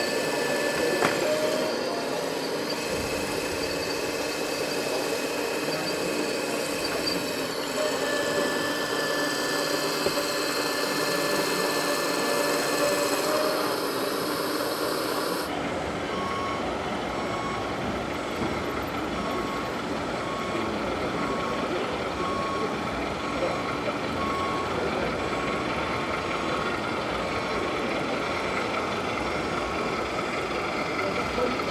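A model hydraulic excavator's pump whines steadily, its pitch shifting slightly as the arm works. After a cut, an RC MAN dump truck runs with a low rumbling engine sound and a short high warning beep that repeats about once a second.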